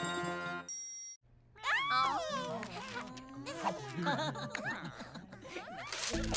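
A jingly title-card tune that stops about a second in, followed by a short high chime. After a brief gap come cartoon characters' wordless voice sounds: high calls that slide up and down.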